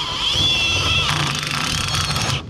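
Cordless drill driving a self-tapping screw through plywood into the steel pickup bed: a steady motor whine that drops in pitch about halfway through as the screw loads the drill.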